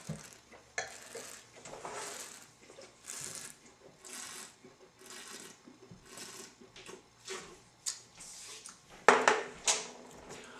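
A wine taster slurping and swishing a mouthful of red wine, a string of short airy bursts about once a second, and spitting it into a metal bucket, with two louder bursts about nine seconds in.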